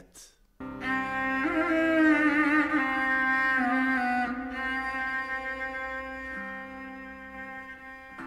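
Slow instrumental music: a bowed string instrument plays long held notes with wavering vibrato, starting about half a second in after a brief pause.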